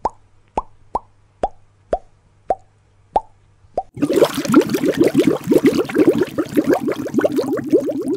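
Cartoon bubble-pop sound effects: single plops about twice a second, each dropping quickly in pitch over a low steady hum, then from about halfway a rapid stream of many overlapping plops.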